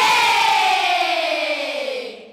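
Children's choir holding one long final note together, its pitch sliding steadily down, fading near the end.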